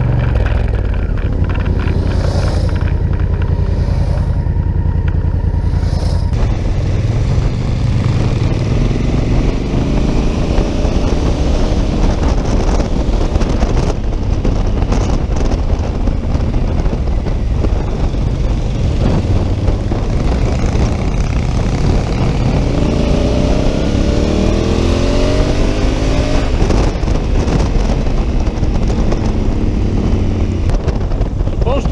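Honda Africa Twin's parallel-twin engine running at road speed, with wind noise. The engine pitch rises twice as the bike accelerates, about ten seconds in and again past twenty seconds.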